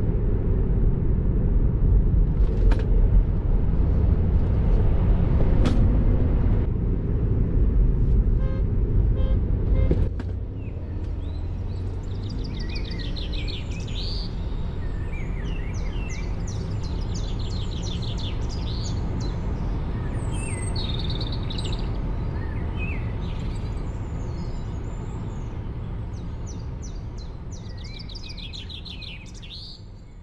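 Steady tyre and road noise in the cabin of a Tesla Model 3 at motorway speed. About ten seconds in it drops suddenly to a quieter hiss, with birds chirping and singing over it, and the sound fades out near the end.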